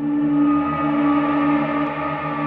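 Ambient passage of an electronic drum and bass track: layered synth tones hold steady, and the higher tones swell in brightness, with a gong-like ring and no beat.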